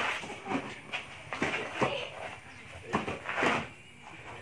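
A hammer knocking on the mould of a cast concrete table leg, about six uneven strikes.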